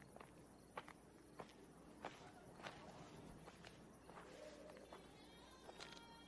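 Faint footsteps crunching on stony, gravelly desert ground, a single walker's slow, even steps about every half second to second.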